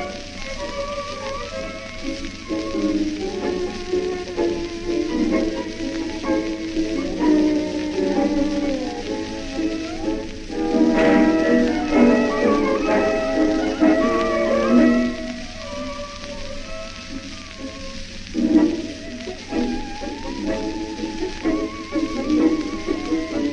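Acoustic-era 1923 78 rpm shellac recording of an instrumental tango by a típica orchestra of two bandoneons, two violins, piano and double bass, thin in the bass, with the hiss and crackle of the disc's surface. The ensemble swells louder about halfway through, then drops back.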